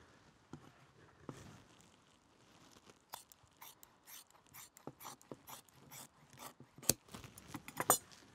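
Scissors cutting through soft deerskin leather: a run of short irregular snips and clicks with light rustling of the hide, and a sharper click near the end.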